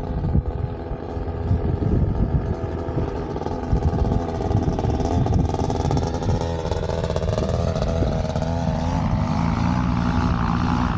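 Paramotor engine and propeller droning as the powered paraglider flies low past, the pitch wavering and growing higher and brighter near the end. Wind rumbles on the microphone throughout.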